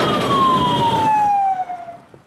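A vehicle siren sliding steadily down in pitch, over the noise of passing vehicles; both fade out near the end.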